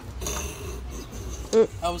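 A plastic water bottle crinkling and rasping as it is handled and passed from hand to hand. A short vocal sound follows, then a voice starts near the end.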